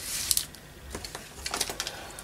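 Light rustles and a few soft taps of a small cardstock box and glued paper being handled and pressed down on a craft table.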